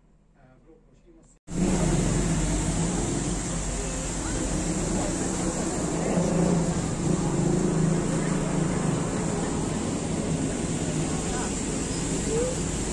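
Near quiet for about a second and a half, then street ambience starts abruptly: a steady traffic rumble with voices of people passing by.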